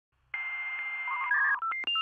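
Electronic beeps of a channel intro sting: a steady tone over hiss for about a second, then a quick run of short beeps at changing pitches.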